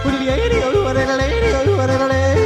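Yodeling in a German folk-style pop song: a voice leaping between high and low notes over a steady, pulsing bass beat.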